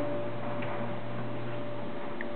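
Steady low hum with an even background hiss, with no distinct knocks or clicks.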